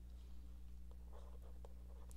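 Faint scratching of a stylus drawing lines on a writing tablet, over a steady low hum.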